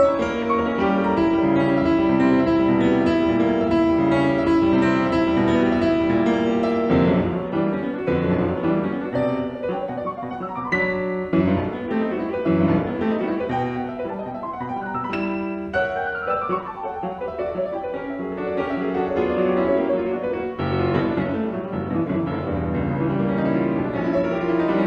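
Classical piano music playing as a background soundtrack, with notes running continuously throughout.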